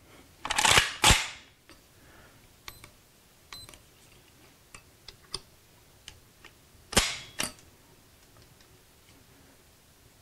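Kalashnikov rifle being dry-fired for a trigger-pull measurement with a trigger gauge. There is a loud metallic clack about a second in, a few light clicks, then a sharp snap about seven seconds in as the hammer falls when the trigger breaks.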